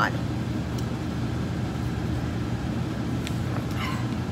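A steady low rumble of background noise, with no change in level.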